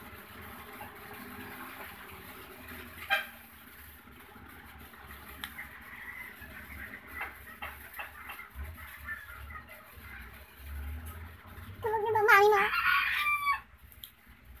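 A rooster crowing once near the end, a single call of about a second and a half that wavers and climbs in pitch. Before it, only low background noise with a few light clicks and one sharper tap about three seconds in.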